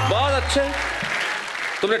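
Studio audience applauding as a background music cue with a low falling tone fades out; a man starts speaking near the end.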